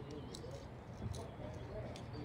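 Faint outdoor ambience on a calm river: a low steady hum, faint distant voices, and a few faint short high clicks.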